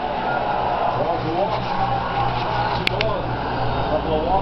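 Muffled, indistinct voices over a steady low hum, with one sharp click about three seconds in.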